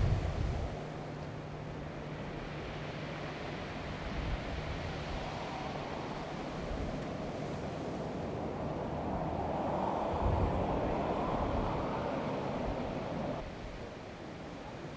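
Outdoor wind noise on the microphone, a rough, fluctuating rush with a low steady hum under it in the first few seconds. It swells about nine seconds in and falls away shortly before the end.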